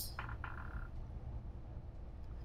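Cabin noise inside a New Flyer Xcelsior XN60 natural-gas articulated bus under way: a steady low rumble of engine and road. A brief higher squeak sounds about half a second in.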